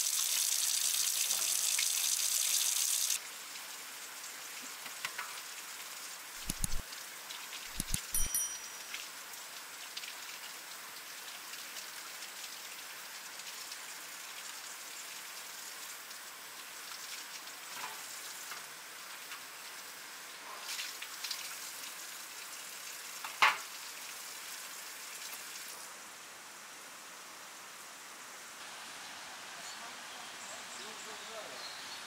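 Water running from an outdoor tap as fish are rinsed in a plastic basket. A loud hiss drops suddenly about three seconds in to a steadier, quieter wash, with a few dull knocks and, later, one sharp click.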